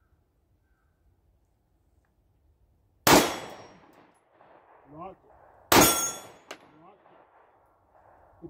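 Two shots from a PSA Dagger 9mm compact pistol, the first about three seconds in and the second about two and a half seconds later, each followed by a short echoing decay.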